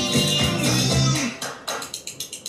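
Closing bars of a children's TV theme song with guitar. The music ends about a second in and is followed by a few fading, evenly spaced taps.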